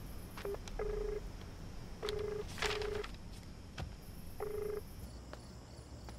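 Phone call tone heard through a mobile handset: five short beeps at one low pitch, two of them a quick pair near the middle, the line ringing out on an outgoing call. A brief rustle sounds over the pair of beeps.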